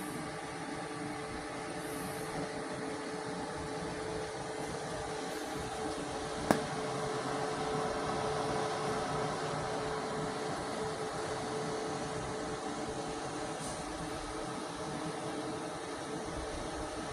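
MultiPro MMAG 600 G-TY inverter welding machine switched on and idling, its cooling fan running with a steady hum and a constant tone. A single sharp click comes about six and a half seconds in.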